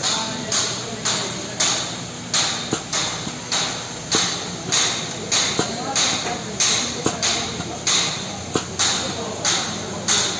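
Maximator air-driven hydraulic pump cycling steadily at about two strokes a second, each stroke a sharp hiss that fades quickly. It is building hydraulic pressure in a bolt tensioner toward 400 bar.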